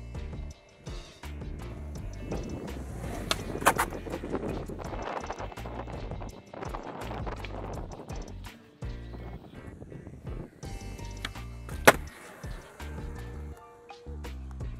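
Skateboard wheels rolling over concrete, with sharp board clacks around four seconds in and a loud single clack near the end, under background music with a bass beat.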